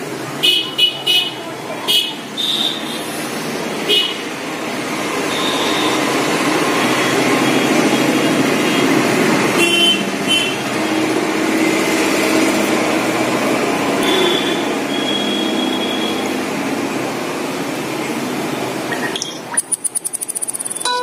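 Steady road traffic noise that swells from about four seconds in, with vehicle horns sounding briefly several times. A few short high beeps come near the start.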